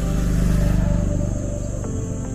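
Steady high insect buzzing, with a low, rapidly pulsing rumble that swells about half a second in and then fades.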